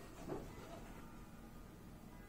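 Quiet shop room tone with faint background music, and a brief soft sound about a third of a second in.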